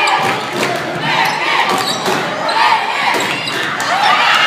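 A basketball being dribbled on a hardwood gym floor, with repeated bounces, over the chatter and shouts of spectators and players.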